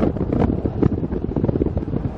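Wind buffeting the microphone at an open window of a moving vehicle: a loud, low, fluttering rumble, with the vehicle's road noise underneath.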